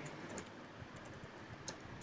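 Faint computer keyboard typing: a run of light, scattered key clicks as a word is typed.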